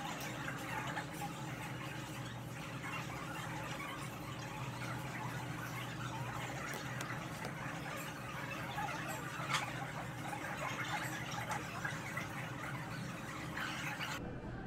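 Café background noise: a steady din of indistinct voices and clatter under a low hum, with one sharp click about nine and a half seconds in.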